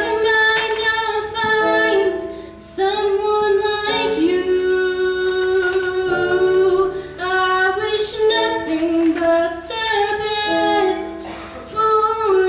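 A young woman singing, accompanying herself on a digital piano keyboard, with held notes and sustained piano chords under the voice.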